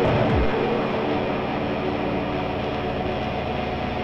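Dense, distorted drone of lo-fi experimental noise music: steady held tones under a thick wash of noise, with a low tone sweeping down in pitch in the first half-second.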